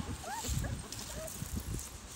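Five-week-old schnoodle puppies giving a few short, faint, high whimpers and yips whose pitch bends up and down, mostly in the first second.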